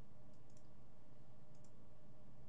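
Computer mouse button clicking a few times, faintly, as polygon lasso points are placed, over a steady low hum.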